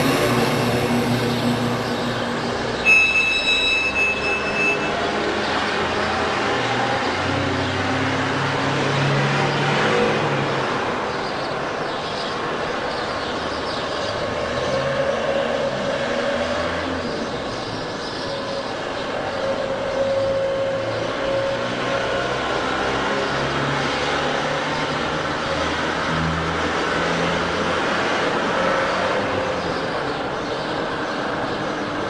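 Road traffic: vans driving past with their engines running, a steady rumble that swells and fades as vehicles go by. A short high-pitched tone sounds about three seconds in.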